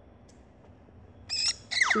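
Faint room tone, then, about a second and a half in, a cartoon chicken's squawking sound effect from a children's story app: short loud calls followed by a cry that falls steeply in pitch just before the end.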